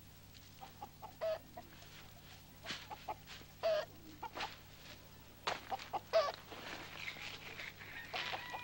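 Chickens clucking softly, a string of short separate clucks scattered through, over a faint steady low hum.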